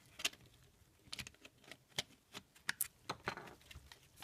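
Light, irregular clicks and taps of hard plastic as the back cover of a Mercedes W163 overhead console is handled and pressed onto its housing, about a dozen separate clicks spread over a few seconds.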